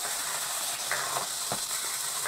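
Eight hobby RC servos, blue micro servos and black standard-size ones, all sweeping back and forth together under a servo tester in linear mode. Their motors and gearboxes make a steady whirring buzz, with a few faint clicks.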